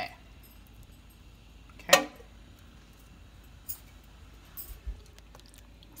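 Light metallic clinks of a tin can and its cut lid against a saucepan as canned peaches are tipped in, with one short sharp sound about two seconds in.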